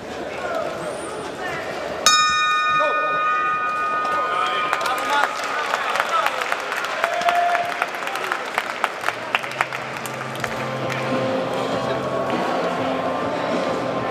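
Boxing ring bell struck once about two seconds in, its ringing fading over about three seconds: the bell ending the round. Arena crowd noise with scattered sharp clicks follows, and music comes in near the end.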